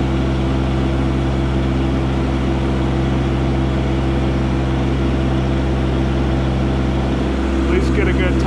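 Mahindra eMax 20S HST subcompact tractor's small diesel engine running steadily at a constant working speed while the tractor drives along a gravel driveway.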